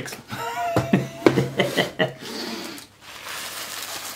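Rolled oats poured from their bag into a kitchen scale's plastic bowl: a steady rustling hiss in the second half, with some crinkling of the bag.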